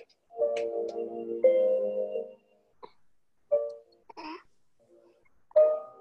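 A gentle lullaby tune of chime-like notes plays from an essential-oil diffuser's built-in speaker. A phrase of held notes comes first, then a few scattered single notes with pauses between them.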